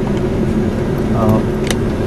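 Steady low hum of a car's engine running, heard inside the cabin, with a brief spoken "uh" about a second in.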